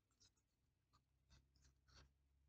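Near silence with a few faint, short rustles and taps of oracle cards being handled.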